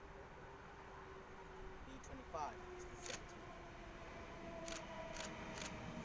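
A NSW TrainLink V set electric intercity train approaching from a distance: a faint, steady hum with a few held tones that grows slowly louder, with several sharp clicks in the second half.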